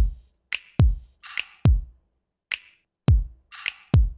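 Programmed electronic drum pattern playing back in FL Studio: deep kick drums whose pitch drops quickly after each hit, alternating with bright, crisp snare-type hits in a sparse, uneven rhythm. There is a short gap about two seconds in.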